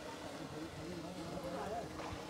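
Faint, low-level speech: quiet voices talking in the background.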